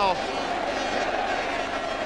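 Steady crowd noise from a packed football stadium during open play, an even, unbroken wash of many voices.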